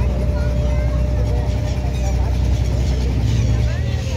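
Steady low rumble of a boat engine running, with a few short gull calls over it, one near the start and one near the end.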